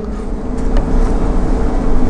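Steady background rumble and hiss with a faint hum, no distinct events.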